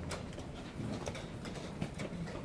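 Irregular sharp clicks and knocks of wooden chess pieces being set down and chess clocks being pressed, from blitz games across the hall.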